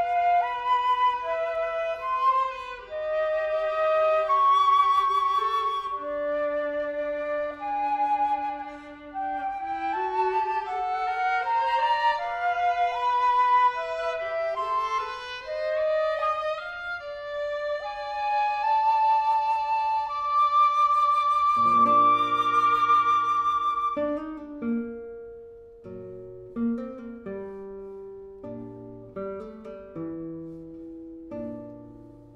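Live chamber trio of flute, viola and classical guitar: the flute carries a melody with vibrato over sustained and gliding viola lines. About three quarters of the way in the flute stops, and plucked guitar notes carry on with the viola.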